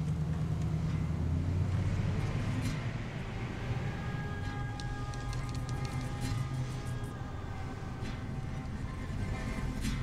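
Patrol car's engine pulling hard as the car drives down the street, with a film score coming in after a few seconds and holding long sustained notes over it.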